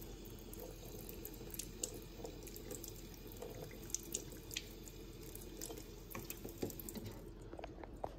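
Kitchen faucet running a thin stream of water onto a plastic pasta server and into a stainless steel sink, with a few sharp ticks and drips scattered through it.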